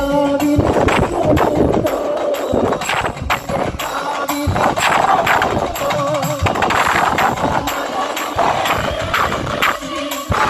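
Live Kerala folk music played loud through a stage PA: a quick, steady percussion beat with a voice singing over it.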